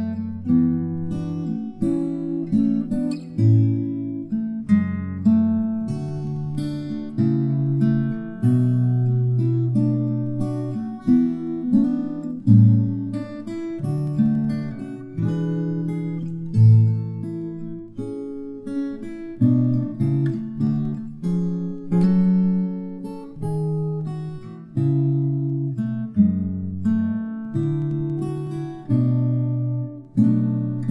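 Solo steel-string acoustic guitar fingerpicked: a slow melody over bass notes, each plucked note ringing and fading.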